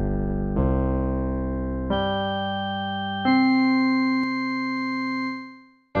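BandLab's Electric Piano 1 MIDI track played back solo: a slow, low bass line. It has four sustained notes starting roughly a second apart, each fading slowly, and the last one is held until it dies away shortly before the end.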